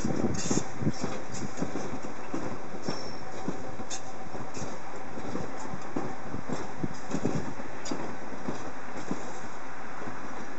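Soviet-built 81-71 metro train rolling past at low speed, with a steady rumble and irregular wheel knocks on the track.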